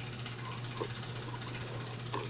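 A steady low hum under an even background hiss, with a few faint, brief sounds.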